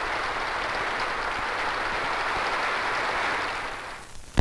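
Large audience applauding: dense, steady clapping that fades out near the end.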